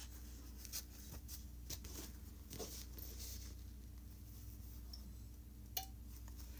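Faint rustling and light clicks of cut fabric pieces being handled and lined up by hand for pinning, with a sharper click near the end, over a low steady hum.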